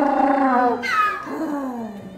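African penguin giving its donkey-like braying call, a flirting sound: one long held note ending about a second in, then a second note that starts high and slides down.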